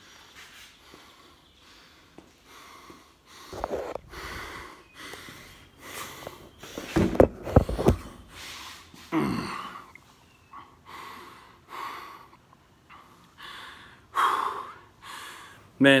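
A man breathing hard and panting, about one breath a second, out of breath after a 50-rep squat set with an empty barbell. Louder rumbling bumps come about seven seconds in, as the camera is handled.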